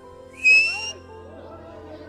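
A short, shrill whistle, rising slightly in pitch and lasting about half a second, a little under half a second in.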